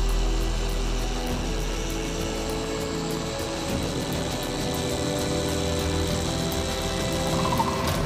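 Rupes electric car polisher running steadily with its foam pad on a car's paintwork, under background music.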